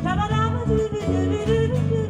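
Live music: a woman singing into a microphone over guitar accompaniment, her voice gliding upward at the start of a phrase.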